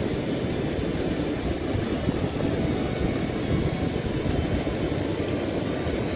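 Steady rumble of wind on the microphone mixed with surf washing up the beach.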